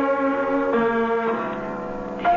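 Piano keys struck one at a time, three notes each lower than the last and left ringing, as the piano is being tuned.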